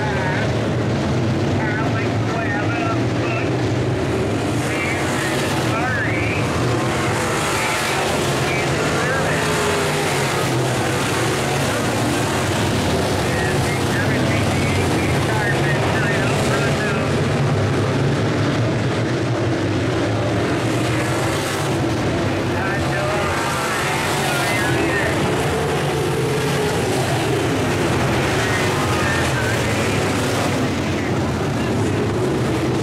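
A field of IMCA Modified dirt-track race cars with V8 engines running at racing speed. The engine notes rise and fall continuously as the cars lap the oval and pass through the turns.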